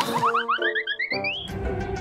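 Cartoon comedy sound effect: a quick run of short notes climbing in pitch for about a second and a half over a held chord, after which background music with a beat comes in.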